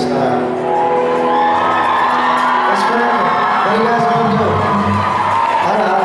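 A live rock band playing a song in a concert hall, with electric guitars and a drum kit, heard from among the audience. Some whoops and cheering from the crowd come through over the music.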